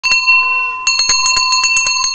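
Engraved brass hand bell hung from a bicycle handlebar, rung with one strike at the start and then a quick run of strikes, about eight a second, from just under a second in, over a steady ringing tone. It is a village ice-cream seller's bell announcing him.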